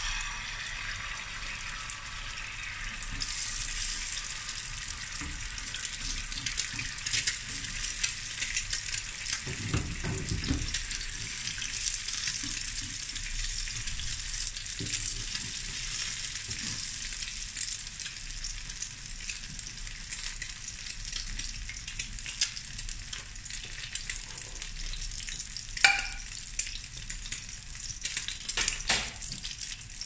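An egg frying in hot oil on a cast-iron tawa griddle: a steady sizzle that grows louder a few seconds in. A brief dull thud comes about ten seconds in, and a few sharp metal clinks of a slotted spatula against the pan, the loudest a few seconds before the end.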